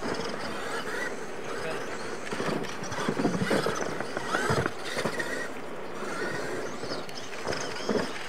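Radio-controlled monster trucks racing on a dirt track: their motors whine up and down in pitch as the throttle is worked, with tyres scrabbling on loose dirt and a couple of thuds from ramp jumps about midway. Faint voices can be heard behind.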